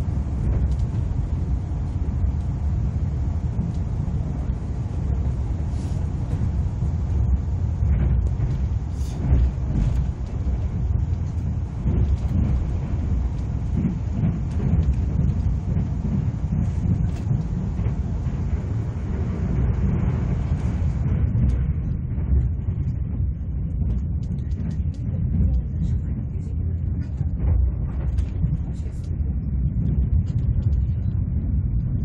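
Steady low rumble of an ITX-Saemaeul electric multiple-unit train running along the line, heard from inside the passenger cabin, with a few short clicks scattered through it.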